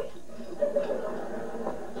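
Studio audience laughing after a punchline, a short swell of crowd laughter that fades near the end.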